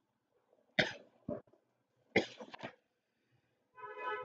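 A person coughing: a few short, sharp coughs spread over about two seconds, the first the loudest, followed by a brief hum near the end.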